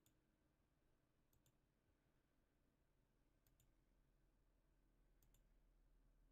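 Near silence, with four very faint computer mouse clicks, each a quick double tick of press and release, spread a second or two apart.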